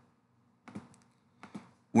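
Computer mouse buttons clicking: a few short, sharp clicks about two-thirds of a second in and another close pair near the end.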